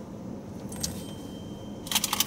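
Steady low hum of a car cabin with the vehicle running, with a faint click a little under a second in and a brief clatter of small objects near the end.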